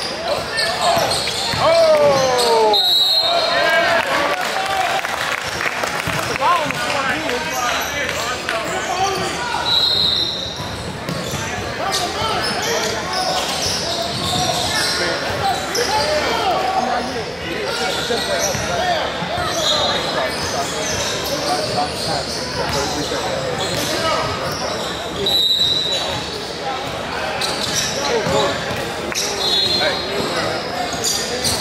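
Indoor basketball game sounds in a large, echoing gym: a basketball dribbling on the hardwood court amid many voices of players and spectators talking and calling out, with a few short high squeaks scattered through.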